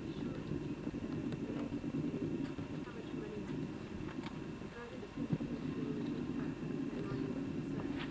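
Indistinct chatter of many people talking at once in a large hall, a steady murmur with no single voice standing out, and a few small clicks.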